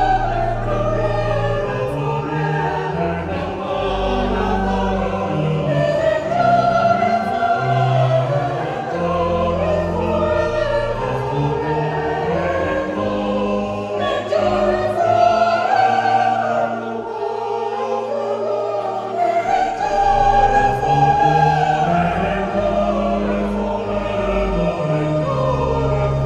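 A mixed choir singing a sacred choral piece over held low notes, the sound continuous and swelling slightly in places.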